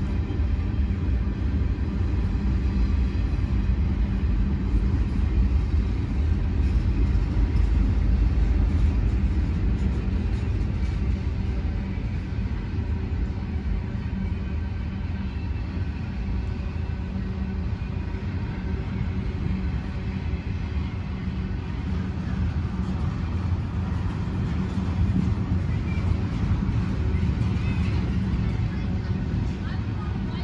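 BNSF manifest freight train rolling past, a steady low rumble of freight cars on the rails that eases slightly in loudness a little before halfway through.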